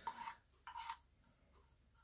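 Metal screw lid of a can of leather cement being twisted open: two short, faint scraping turns about half a second apart.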